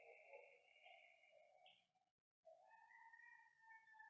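Near silence: faint room tone with a thin steady hum that breaks off briefly about two seconds in and returns at a slightly different pitch.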